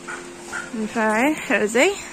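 A dog yelping twice, short pitched cries that bend in pitch in the second half.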